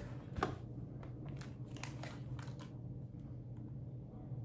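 A handful of light clicks and rustles from a power cable being handled and its plug pushed into a portable monitor, spread over the first two and a half seconds, with a steady low hum underneath.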